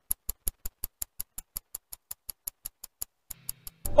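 Rapid, evenly spaced ticking, about six sharp clicks a second, with a short break about three seconds in.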